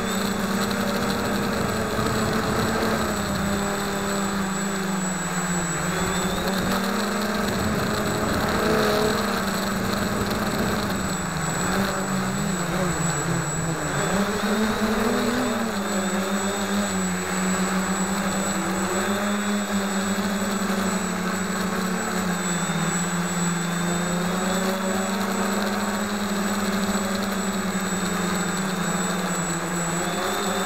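Walkera Hoten-X quadcopter's motors and propellers buzzing steadily, heard from the camera mounted on it. The pitch wavers with throttle, dipping and rising again about halfway through.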